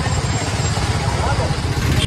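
Wind rushing over the microphone with engine and road noise while riding a motorcycle along a road, a steady heavy rumble.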